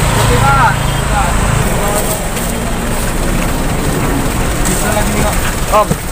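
Small motorcycle engine idling close by, stopping or fading about a second and a half in, with a steady background din of people around it.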